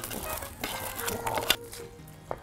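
A metal utensil scraping crispy coconut bacon bits across a metal baking tray: a quick run of scrapes and clicks that stops about a second and a half in. Faint music plays underneath.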